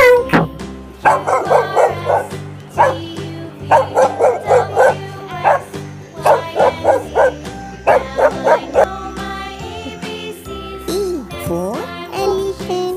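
A small dog yapping in repeated quick runs of short barks, over a steady children's music backing.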